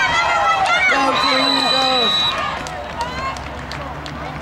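Many voices of spectators and players shouting and cheering during a football play, with a referee's whistle blowing one steady note for about a second, starting about a second in. The shouting drops off after the whistle.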